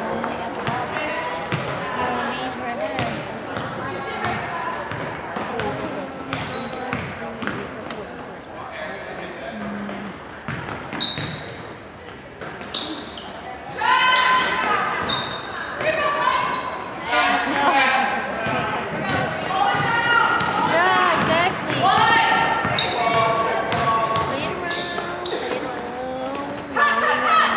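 Basketball game in a large gym: the ball bouncing on the hardwood floor, short high sneaker squeaks, and voices of players and spectators ringing in the hall. It gets louder about halfway through as play picks up.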